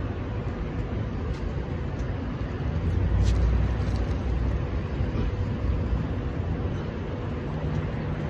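Outdoor rumble of wind on the microphone and road traffic, steady and low, swelling about three seconds in.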